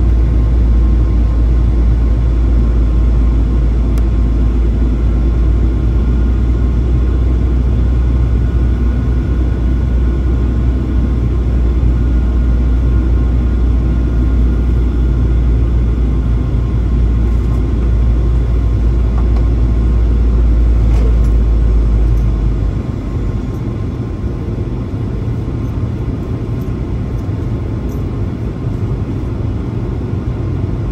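Steady cabin noise of a Boeing 737-800 airliner in flight: a deep rumble of engines and airflow with faint steady whine tones. About three-quarters of the way through, the deepest part of the rumble drops away and the noise gets somewhat quieter.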